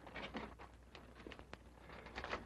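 Near quiet: the steady low hum of an old film soundtrack, with a few faint, soft ticks.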